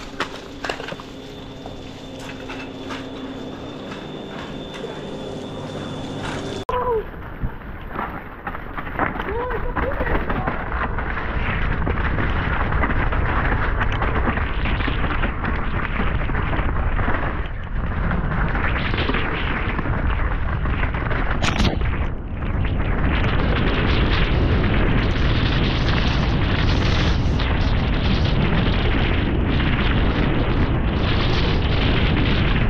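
Mountain bike descending a muddy woodland trail: wind buffeting the bar-mounted camera's microphone, with tyres rolling on wet dirt and the bike rattling over the ground. It starts fairly quiet with a steady hum, then turns loud and dense about a quarter of the way in and stays loud as speed builds.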